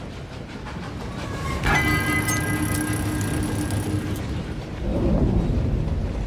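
Coal-fired steam train rumbling low and steady. A sudden high ringing tone cuts in about a second and a half in and holds for about two seconds. The rumble swells louder near the end.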